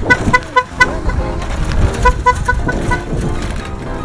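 A motor scooter's horn beeping in two runs of about four short toots each, one right at the start and another about two seconds in, over a low rumble.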